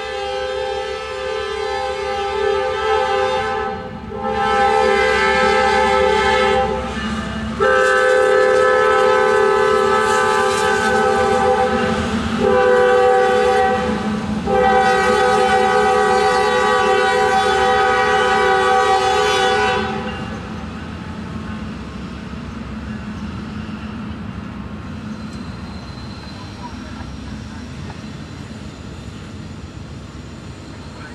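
Freight locomotive's multi-chime air horn sounding a series of long blasts with a short one near the end, as the train passes. The horn stops about twenty seconds in, leaving the steady rumble and clatter of double-stack intermodal cars rolling by.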